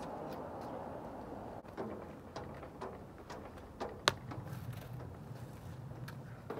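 Quiet outdoor background with a faint steady hiss and scattered light clicks; the loudest is a single sharp click about four seconds in.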